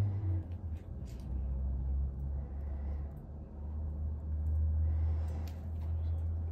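A low, uneven rumble throughout, with a few faint clicks.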